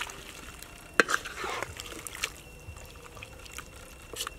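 Wooden spatula stirring a thick fish soup in a pan, with wet sloshing and light knocks of the spatula against the pan; the sharpest knock comes about a second in.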